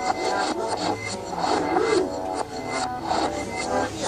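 Music playing in the background while a metal spoon scrapes and spreads peanut butter over a pancake in repeated short strokes.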